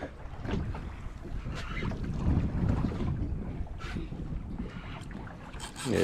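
Wind buffeting the microphone and water slapping against the hull of a small boat drifting at sea, an uneven low rumble with a few faint clicks.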